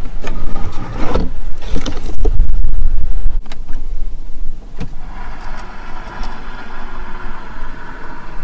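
Handling knocks and clicks, then a steady electric motor whirr starting about five seconds in as the Zeekr 009's roof-mounted rear entertainment screen powers down and unfolds from the ceiling.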